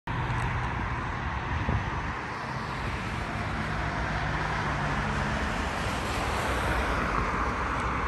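Road traffic on a wide multi-lane urban road: a steady rush of tyre and engine noise from cars passing below.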